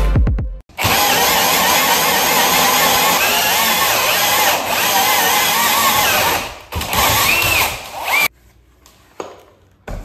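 Cordless drill running a 4¼-inch hole saw through a plywood subfloor, the motor's whine wavering under load as it cuts. It pauses briefly about six and a half seconds in, runs again, and stops a little after eight seconds in.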